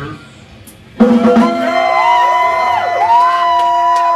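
A live metal band's song cuts off. About a second later a loud electric guitar chord is struck and left ringing, with long sustained amp feedback tones that bend up and down in pitch.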